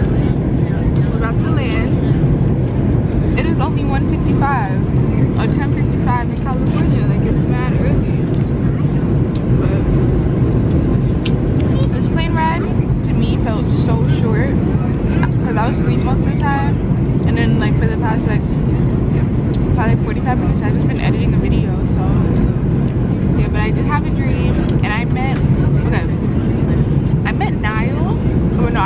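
Jet airliner cabin noise in cruise flight: a loud, steady low rumble with no breaks, with snatches of quiet talking heard over it.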